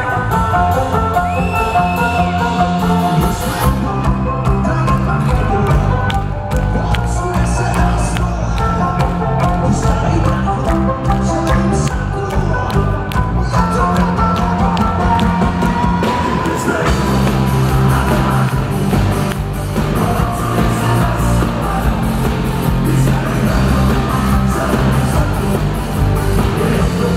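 Live rock band playing loud, continuous music on electric guitars, bass and drum kit.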